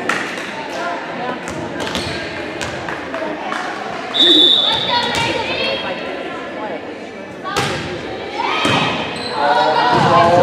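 Volleyball bouncing on a hardwood gym floor, with overlapping voices echoing in a large hall. A short steady whistle blast about four seconds in, typical of a referee's whistle to serve. A sharp hit of the ball past seven seconds, then louder shouts near the end.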